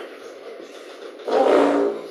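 Quiet room tone, then about a second and a half in, a short loud vocal sound from a man, held on one pitch for about half a second.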